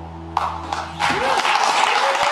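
The last acoustic guitar chord rings out and fades. A few claps come about a third of a second in, then audience applause breaks out about a second in, with a cheer rising over it.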